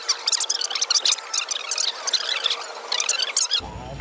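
A man's voice fast-forwarded into high, squeaky chipmunk chatter, too quick to make out words. It cuts off suddenly about three and a half seconds in, and normal speech takes over.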